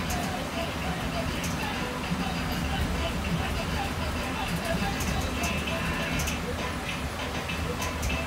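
Steady engine and road rumble heard from inside a moving school bus, with a radio's voice and music faintly underneath.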